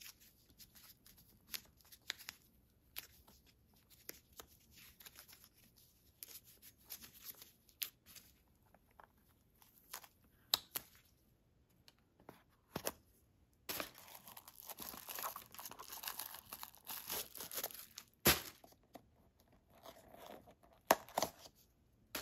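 Tissue paper crinkling and rustling as the packing stuffing is pulled out of a pair of leather shoes, with scattered clicks and handling knocks. The crinkling is busiest for a few seconds past the middle, and one sharp knock comes about two-thirds of the way through.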